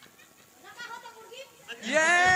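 Faint low talk, then near the end a person's loud, long drawn-out vocal cry on a steady pitch begins.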